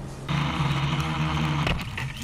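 Quadcopter motors and propellers buzzing steadily, picked up close by the drone's own on-board camera. The buzz starts about a third of a second in, and a sharp knock near the end comes as the quadcopter runs into tree branches.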